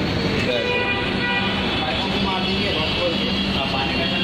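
Refrigeration condensing unit running: a steady mechanical hum with a high whine above it, and voices in the background.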